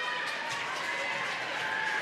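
Gymnasium crowd murmur, a steady wash of many distant voices with no single voice standing out.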